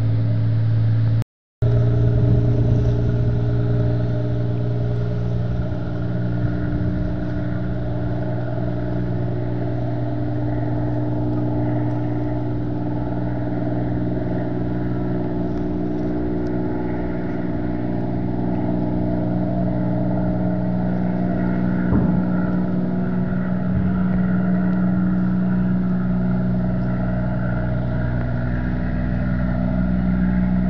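Large ship's diesel engines running with a steady low drone. The sound drops out briefly about a second in, and there is a single short knock about 22 seconds in.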